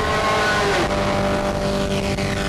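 Harsh noise music: a dense wall of distorted noise with several steady droning tones, and one tone sliding down in pitch about halfway through.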